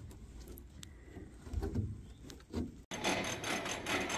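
Faint rubbing and a few dull low bumps as a hollow plastic rock-style well cover is lowered and set over the well head and pressure tank. After an abrupt cut near the end, a steady faint outdoor hiss.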